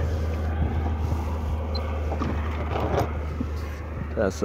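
Steady low drone and wash of wind and water noise around a small inflatable boat drifting with its outboard off, with a couple of faint clicks.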